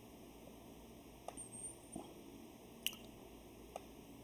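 Near silence with a handful of faint, short clicks scattered through it.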